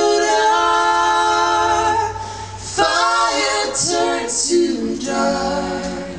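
Mixed male and female voices singing a cappella in close harmony, holding long chords that change a few times. The chord breaks off about two seconds in, new phrases start, and the singing fades near the end.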